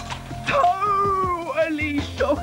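Music with a voice holding one long, wavering note that slowly falls in pitch, from about half a second in until near the end.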